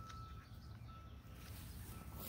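Faint outdoor background: a low rumble with a thin, steady high tone that drops out and comes back a couple of times.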